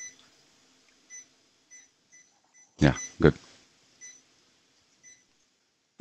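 Patient monitor in a cardiac cath lab giving short, faint high beeps, about seven of them, unevenly spaced half a second to a second apart, the pulse tones of the patient's heartbeat. A brief spoken word or two breaks in near the middle.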